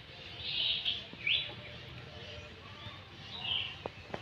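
Birds chirping in a few short calls: one about half a second in, a quick rising one just after a second, and another near the end, over a faint low background rumble.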